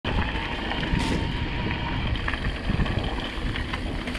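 Wind noise on the microphone over the rumble of mountain-bike tyres rolling on a dirt trail, with a few sharp clicks and rattles from the bike.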